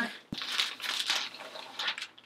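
Clear plastic mailer bag crinkling and rustling as a dress in a fabric bag is pulled out of it, with a short knock just after the start.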